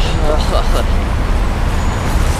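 Street traffic noise with a heavy, steady low rumble, and faint voices briefly about half a second in.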